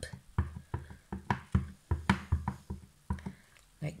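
Clear acrylic stamp block tapped repeatedly onto a foam ink pad to ink up a rubber stamp, giving a quick, slightly uneven series of light taps, about four a second.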